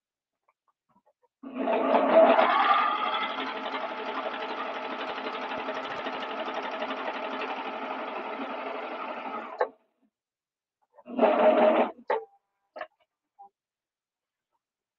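Juki MO3000 air-threading serger sewing a seam for about eight seconds, louder as it starts and then running steadily before it stops. About a second and a half later comes a short second run of the machine with a few light clicks: the automatic thread cutter trimming the thread chain once the fabric has passed the sensor.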